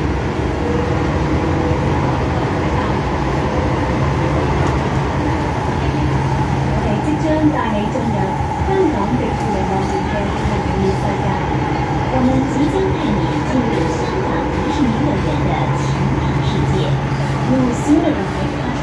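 MTR M-Train running between stations, heard from inside the car: a steady rumble of wheels and motors with a low hum that swells twice. People talk in the background.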